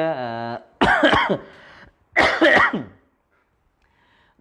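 A person coughing twice, two rough, throaty coughs about a second and a half apart.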